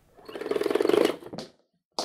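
A man blows out a breath through pursed lips with a rapid fluttering buzz, rising and fading over about a second and ending in a small click.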